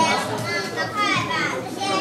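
Several children's voices talking and calling out at once, overlapping chatter with no single clear speaker.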